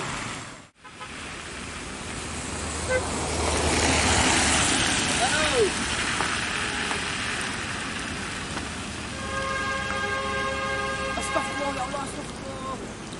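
Traffic on a rain-wet road: the hiss of a vehicle passing swells around four seconds in. A vehicle horn then sounds steadily for about three seconds near the end.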